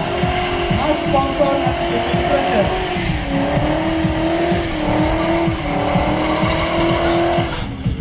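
BMW E39's V8 held at high revs while the rear tyres spin and squeal in a smoky burnout, one sustained tone that dips slightly about three seconds in and then holds steady.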